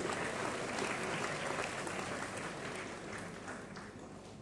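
An audience applauding, a dense steady patter of many hands clapping that dies away near the end.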